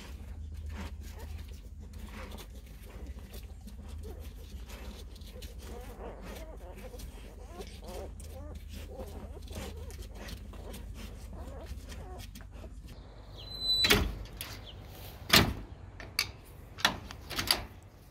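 Faint squeaks of newborn puppies over a low rumble for most of the stretch. Near the end, a run of five or six sharp metallic clanks and rattles from a chain-link gate fitted with an old car hatchback door spring.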